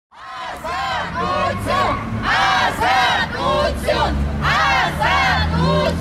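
Crowd of protesters chanting together in unison, the voices rising and falling in short repeated phrases, with a low steady hum beneath.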